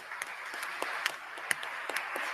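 Audience applauding: many hands clapping at once in a dense, steady patter.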